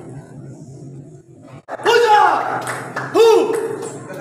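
Low room noise, cut off abruptly and followed by an edited-in sound effect: two loud swooping tones, each rising and then falling in pitch, about a second and a half apart.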